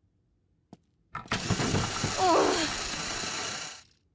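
A rushing, noisy sound effect that starts about a second in and lasts nearly three seconds, with a short falling vocal cry in its middle.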